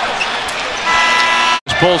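Basketball arena crowd noise, then a steady horn tone for about two-thirds of a second that is cut off abruptly.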